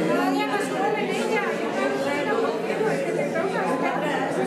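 Crowd chatter: many people talking at once in an indistinct, steady hubbub of overlapping conversations.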